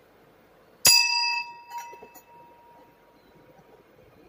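A single bright metallic ding, like a small bell, struck about a second in and ringing out over a second or two, with a fainter tap just after.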